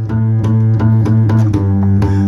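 Acoustic guitar strummed in a quick, steady rhythm, about five strokes a second, over a held low note.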